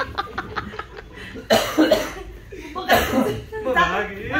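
A group of people laughing together, with a quick run of short laugh pulses at first and two loud, breathy outbursts about a second and a half in and around three seconds in.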